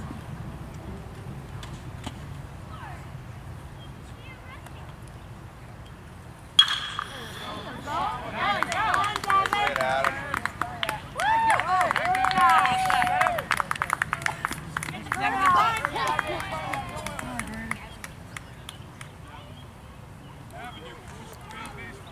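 A bat strikes the ball with one sharp crack and a short metallic ring, about a third of the way in. Spectators then shout and cheer for several seconds, with some clapping, while a run scores; after that it goes quiet again.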